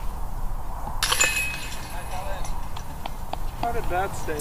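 A disc golf disc hits the metal chains of a basket about a second in, and the chains jingle and rattle as the disc drops in, marking a made putt.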